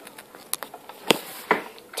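Three short plastic clicks and knocks, the loudest near the middle, as a front-loading washing machine's detergent drawer is handled and pulled open.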